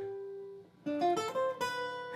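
Archtop jazz guitar played single-note with a pick: a held note rings out and fades, then about a second in a quick run of single notes, a common jazz lick, ends on a note left ringing.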